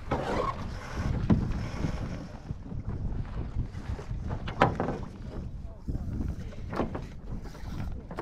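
Wind buffeting the microphone on a small sailing dinghy under way, with a few sharp knocks from the boat and its fittings.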